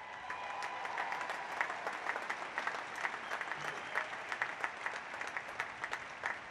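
Audience applauding steadily: a dense spatter of many hands clapping.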